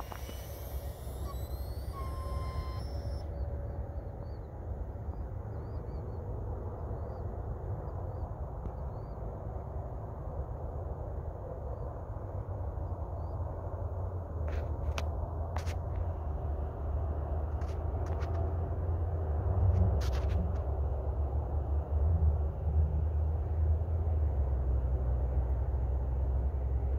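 The high whine of a free-flight model plane's motor fades as the plane climbs away and cuts off about three seconds in, the end of its timed motor run. Wind then buffets the microphone for the rest of the time, growing stronger toward the end, with a few faint chirps and clicks.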